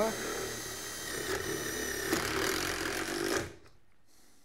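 Impact driver running steadily with a high whine as it drives a screw to fasten the top roller bracket of a garage door, stopping about three and a half seconds in.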